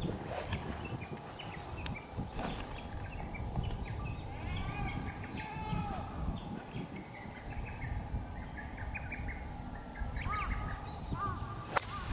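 Small birds chirping repeatedly over outdoor background noise, with two short swishes in the first few seconds as a practice swing is taken. Just before the end comes a single sharp crack, the loudest sound: a driver striking a golf ball off the tee.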